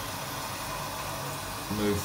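Steady hiss of water running into a toilet cistern as it refills through its inlet valve.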